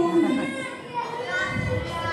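A group of young children's voices in unison, their pitch gliding as they chant or sing together.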